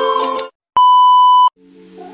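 A single loud electronic beep, one steady high tone lasting about three-quarters of a second, set between two cuts of silence. Intro music stops just before it, and soft music begins near the end.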